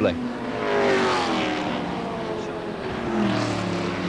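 Racing saloon car engines at full throttle as the cars go by, the engine note sliding steadily down in pitch over a couple of seconds. A second car's lower engine note comes in near the end.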